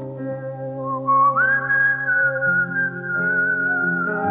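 Instrumental music: a high, whistle-like lead melody slides up about a second in and holds a long note over sustained low chords.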